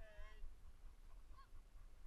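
Short, high-pitched honking calls from an animal. The loudest comes right at the start and a faint one follows about a second and a half in, over a low background rumble.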